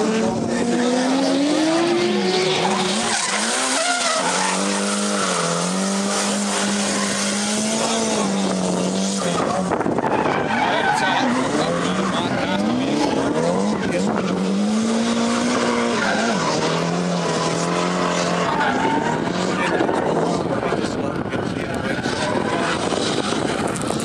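Drift car's engine revving hard, its pitch dipping and climbing over and over with the throttle, while its tyres squeal and screech through a smoky drift.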